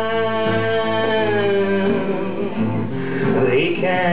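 Man singing live to his own acoustic guitar: he holds one long sung note for about the first two seconds, then the guitar carries on alone briefly before his voice comes back in near the end.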